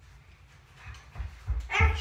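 A pet dog whimpering and yipping in the second half, over a few low thuds.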